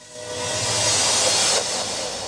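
Logo-reveal sound effect: a hissing whoosh that swells for about a second and then begins to fade.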